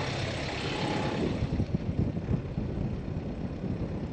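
Low steady rumble with irregular buffeting, like wind on the microphone, on a sailboat's deck; the buffeting grows from about a second and a half in.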